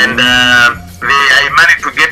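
A voice singing over background music, holding one steady note for most of a second at the start before moving on through shorter phrases.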